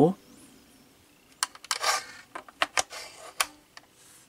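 An 18350 lithium-ion cell being fitted into a slot of an XTAR VX4 battery charger: a short scrape as it slides against the slot's contact, and several sharp clicks of plastic and metal.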